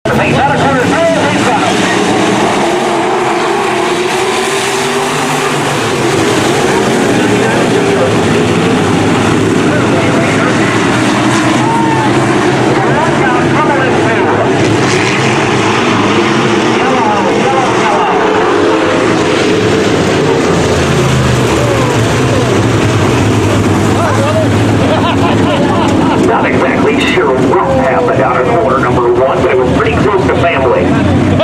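Several sport modified dirt-track race cars running on the track, their engines loud and steady, with revs rising and falling as they circle.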